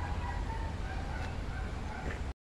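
Steady rushing of a flash-flooded river running high and fast, with a low rumble underneath.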